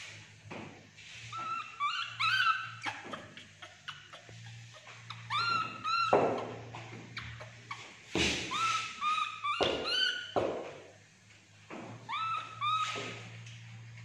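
A baby monkey gives short, high squeaky chirps in quick clusters of two to four, several times over. Sharp knocks of billiard balls against each other and the plastic chair come in between.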